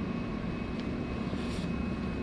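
Steady low rumble of ambient noise in an underground railway station hall, with a couple of faint ticks.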